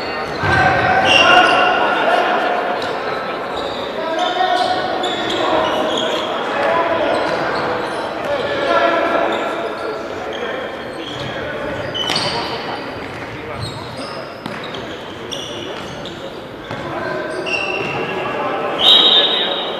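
Players' shouts and calls echoing in a large sports hall during an indoor futsal game, with the thuds of the ball being kicked, the sharpest about halfway through.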